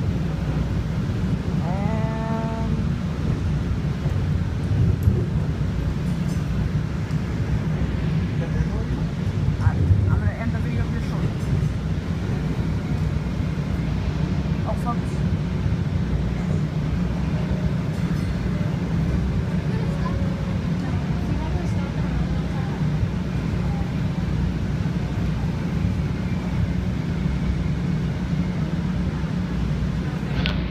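Steady low rumble of a DART light rail train running, heard from inside the passenger car.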